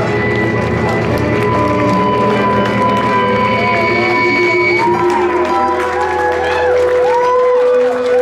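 Live jazz-punk band with saxophone and stand-up bass playing long held notes; the low bass stops about five seconds in, leaving high sustained tones and many short rising-and-falling pitch glides.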